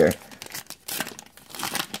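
Trading-card pack wrapper crinkling and tearing as it is cut with scissors and pulled open, an irregular run of crackles and small snaps that grows busier in the second half.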